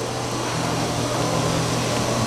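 Steady machine hum over a hiss from operating-room equipment, with a second, slightly higher tone joining about half a second in.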